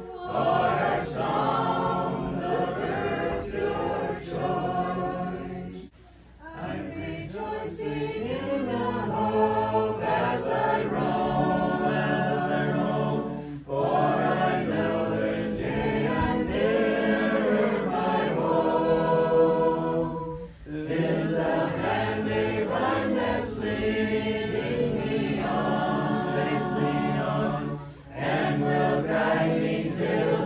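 A group of men's and women's voices singing together a cappella, with no instruments. The song goes in four phrases, each followed by a short pause for breath.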